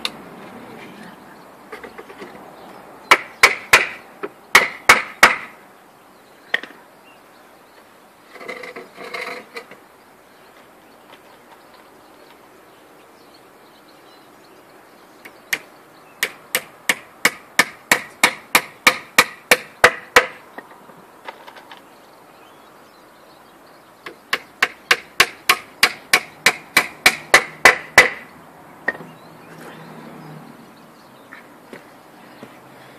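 Hammer driving nails into the timber of a workbench: a short burst of blows a few seconds in, then two long runs of steady strikes, about four a second, in the middle and near the end.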